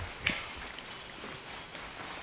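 Small bells on a dog's Christmas collar and booties jingling faintly as the dog moves about, with a soft knock about a quarter second in.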